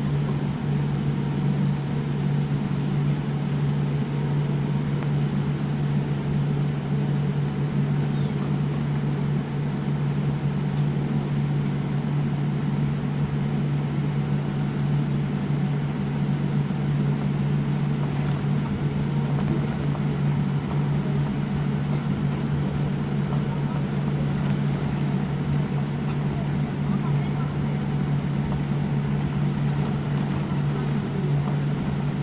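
Steady cabin noise of a jet airliner taxiing, heard from inside: a constant low hum with an even rush over it, unchanging in level.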